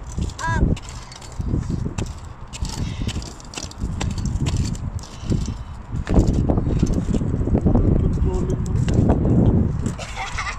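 A child's kick scooter rolling over a wet tarmac path, with footsteps alongside and a low rumbling noise that grows heavier about six seconds in.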